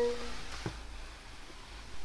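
The tail of an electronic chime tone from the car's cabin electronics, cut off just after the start, then a single soft click about two-thirds of a second in.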